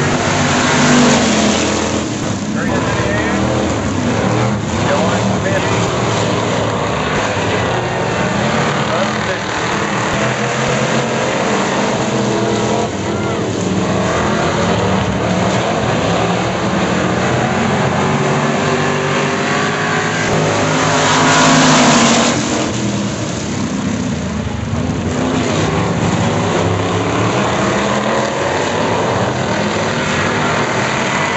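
A pack of Renegade-class dirt-track race cars running laps together, their engines loud and continuous. The sound swells as the cars pass close, about a second in and again around twenty-two seconds.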